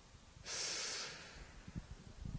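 A single breath blown out close to a handheld microphone, lasting under a second and starting about half a second in. It is a sigh-like exhale, with faint low thumps of mic handling after it.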